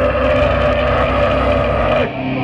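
Live thrash metal band at full volume: distorted electric guitars and bass holding one loud, steady chord.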